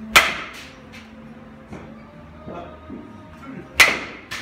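Baseball bat hitting a ball, twice, about three and a half seconds apart. Each sharp crack is followed about half a second later by a softer second knock.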